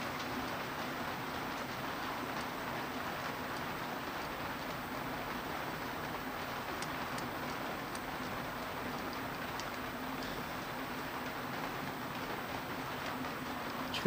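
Steady shop background noise, an even hiss with a faint low hum, like ventilation or machine fans running. A few faint ticks sound in the middle.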